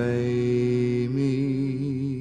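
A man singing one long held note in a slow folk ballad, with a vibrato setting in about a second in.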